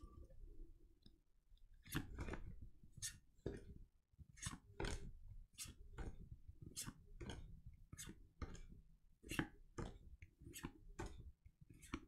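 Trading cards being flipped through by hand from a just-opened booster pack: a faint slide-and-snap of card on card about twice a second, starting about two seconds in.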